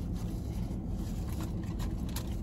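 Steady low rumble inside a parked car, with quiet chewing and a brief rustle of a paper sandwich wrapper near the end.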